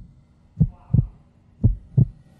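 Heartbeat sound effect, a low double thump repeating about once a second, used as a suspense cue during the countdown to the couple's decision.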